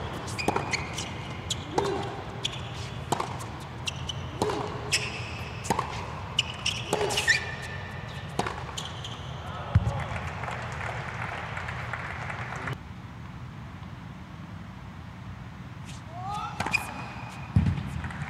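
Tennis ball on a hard court: a series of sharp separate taps, about one every half to two-thirds of a second for the first nine seconds, then one heavier thud about ten seconds in, after which the court goes quieter.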